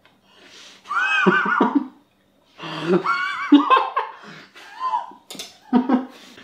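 A man laughing with his mouth full, high and wordless, in two long bursts about a second in and near the middle, then shorter ones toward the end.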